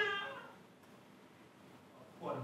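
A voice from a film clip played over the lecture room's speakers: one loud drawn-out call of about half a second at the start, falling a little in pitch.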